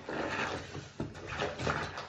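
A soaked sponge squeezed in the hand, squelching as soapy water streams out of it into a foamy bath, in two surges with a short sharp click about halfway through.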